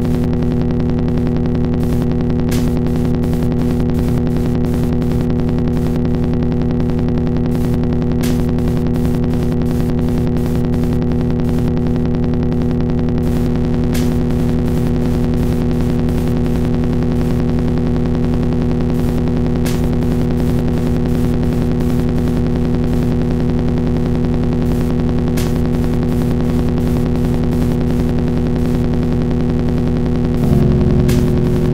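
Experimental drone from an electric guitar run through effects pedals: a dense, steady wall of held low tones with a fast pulsing grain, and a sharp click about every six seconds. The texture shifts near the end.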